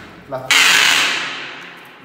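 A single hammer blow on a wooden pole nailed across a glass-paned wooden door, knocking it loose: a sharp, loud bang about half a second in that fades away over about a second and a half.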